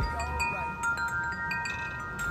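Metal tube wind chimes ringing, several tones sounding together, with fresh strikes about a second in and again around a second and a half.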